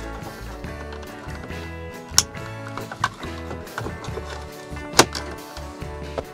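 Background music, over which the plastic headlamp switch snaps into the dashboard with a few sharp clicks. The loudest clicks come about two and five seconds in.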